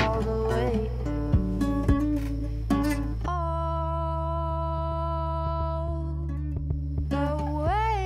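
Background music: plucked guitar notes over a steady low bass, then a long held note from about three seconds in that rises in pitch near the end.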